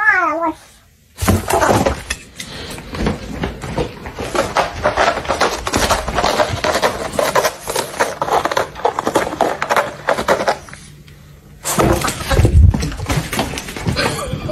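A short cat meow at the very start, then a long run of irregular scratchy crackling as a cat claws and rubs on a corrugated cardboard scratcher, with a louder stretch of knocks near the end.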